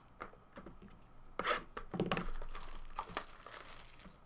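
Packaging being handled: a few light knocks, then about a second and a half in a rough tearing and crinkling lasting a little over two seconds, as a sealed hockey card hobby box is taken from its cardboard case and its plastic wrap torn.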